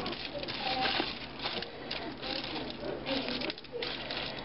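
Aluminium foil crinkling and rustling under a hand tossing oiled green onions on a foil-lined baking tray, in irregular crackles.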